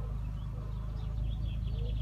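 Faint birds chirping over a steady low rumble, the chirps coming in a quick run in the second half.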